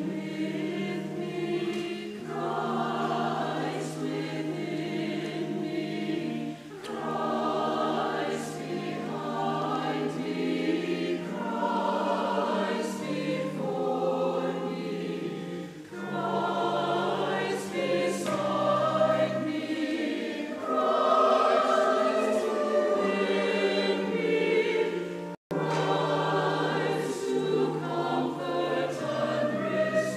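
Robed mixed church choir of men and women singing in phrases, with held low notes and short breaks between lines. The sound cuts out for an instant about 25 seconds in.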